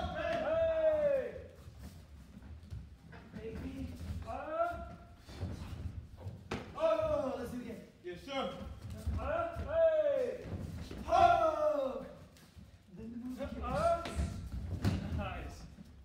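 Taekwondo kicks landing on padded chest protectors with sharp thuds, with short falling yells (kihap) from the fighters about six times, echoing in a large hall.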